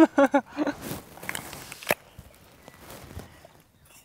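Crunch of biting into a crisp apple, with a sharp snap about two seconds in, followed by quieter chewing that fades out.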